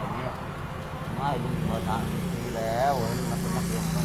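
Outdoor street noise with a steady low engine hum that becomes stronger about halfway through, under faint, indistinct voices.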